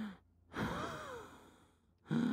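A person's long voiced sigh, starting about half a second in, its pitch rising and then falling as it fades away.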